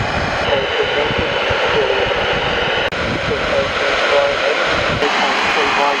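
A portable transistor radio's speaker carrying a weak amateur AM voice signal on the 160-metre band, the voice faint and broken under loud steady hiss and static. A steady high whistle sounds over it for about two seconds near the start.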